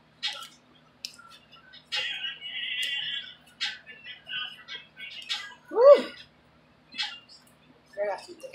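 A comb being raked through thick coiled hair close to the microphone, a series of short rasping strokes with a longer scratchy pass a couple of seconds in. About six seconds in comes one short squeak that rises and falls in pitch, the loudest sound.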